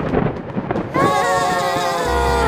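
A loud rumbling crash like a thunderclap sound effect, followed about a second in by the puppet characters screaming together in one long held scream.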